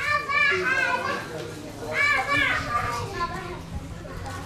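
High-pitched children's voices calling out, in two loud stretches: one at the start and one about two seconds in.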